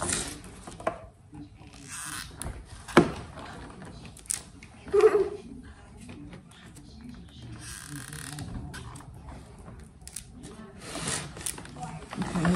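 Hand-work noises from crafting with a hot glue gun: scattered clicks and taps, the sharpest about three seconds in, with stretches of plastic crinkling and a short hum-like voice sound around the middle.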